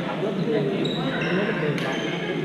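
Badminton hall din: a babble of players' voices echoing around a large gym, short high shoe squeaks on the court floor about halfway through, and a sharp racket hit just before the end.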